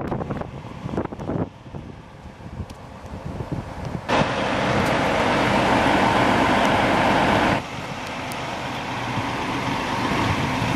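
Motor coach engine idling as a steady low rumble, with a louder, even rushing noise that cuts in abruptly about four seconds in and stops just as abruptly near eight seconds.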